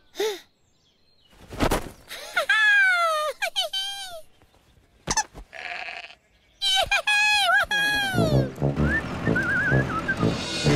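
Cartoon sheep bleating in a human voice: two bouts of short, wavering bleats that fall in pitch, with a single thump before the first. Light rhythmic music with a whistled tune comes in near the end.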